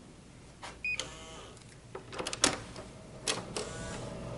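Hotel room keycard door lock beeping once, followed by the latch and handle clicking and the door knocking open, the loudest knock about two and a half seconds in. A steady hum comes in near the end.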